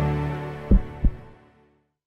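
Short intro jingle fading out, with two low thumps about a third of a second apart near the middle of the fade.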